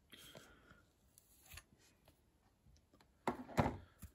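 Handling noise as a thin metal ticket is pried out of its packaging insert by hand: a faint scraping rustle at first, then two sharp clicks close together near the end.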